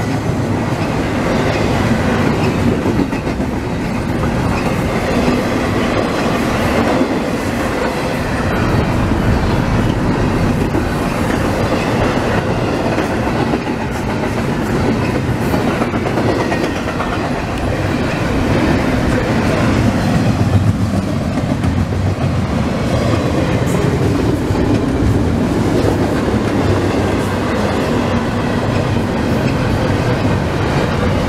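CSX double-stack intermodal freight train passing close by: steady, loud noise of the well cars' wheels rolling on the rails.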